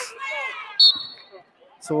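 Basketball referee's whistle blown once, a short steady shrill tone about a second in, calling a double-dribble violation. Before it, sneakers squeak on the gym floor.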